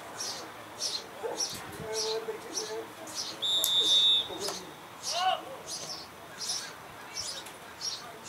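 A referee's whistle is blown once, a short steady blast of about half a second, a little over three seconds in. Under it, high chirping repeats about twice a second throughout, with faint shouts of players.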